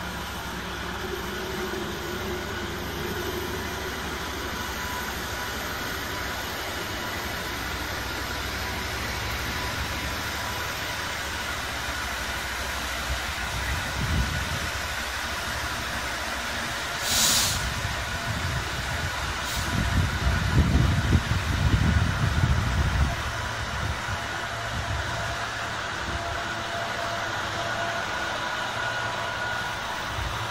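Freightliner Class 66 diesel locomotive (EMD two-stroke V12) running as it hauls a freight train of open wagons past, with a steady rumble. A brief hiss comes about 17 seconds in, and a louder low rumble from about 20 to 23 seconds in.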